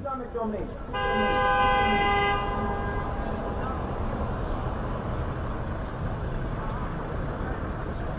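A steady two-pitched horn-like tone sounds once, held for about a second and a half, over a low steady background hum.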